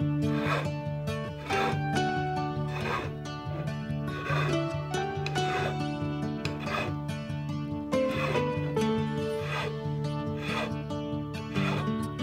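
Background music, with a small triangular file rasping along the carved grooves of a wooden walking stick in strokes about every second and a half.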